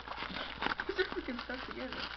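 Plastic shrink wrap crinkling and crackling in short bursts as it is pulled off a cardboard card box, with a quiet mumbling voice underneath.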